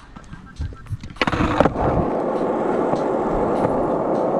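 Skateboard put down with a couple of sharp clacks about a second in, then its wheels rolling steadily over rough asphalt.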